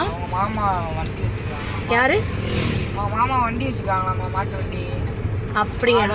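Steady low rumble of a Tata car's engine and tyres on the road, heard from inside the cabin while driving.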